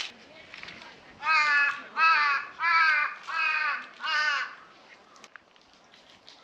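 A crow cawing five times in a row, about one call every three-quarters of a second.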